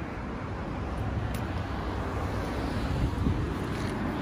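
Wind rumbling steadily on the microphone.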